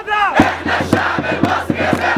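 Large protest crowd chanting slogans in unison. About half a second in, a rapid run of sharp beats, about seven a second, starts under the voices.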